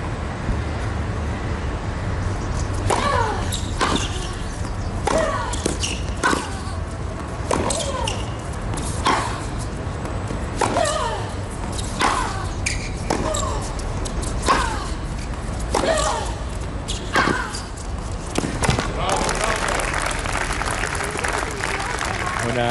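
Tennis rally: about a dozen racket strikes on the ball, roughly one every second and a bit, many with a short falling grunt from a player as she hits. Near the end the rally stops and the crowd applauds the point.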